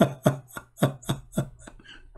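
A man laughing in a rhythmic run of short 'ha' bursts, about three or four a second, dying away near the end.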